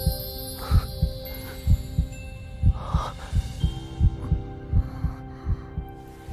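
Heartbeat sound effect: deep, muffled thumps about once a second that quicken in the second half, over a soft sustained music pad.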